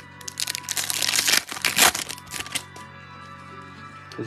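A trading-card pack wrapper torn open and crinkled by gloved hands: dense crackling for about two and a half seconds, loudest near the middle, then only the background music.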